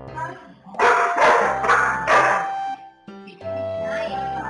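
A Golden Retriever × Flat-Coated Retriever puppy barking about four times in quick succession, made to wait while its food is being prepared, over background music.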